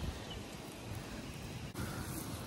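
Low-pressure soft-wash spray hissing steadily from a wand nozzle onto clay roof tiles, with a brief dip near the end.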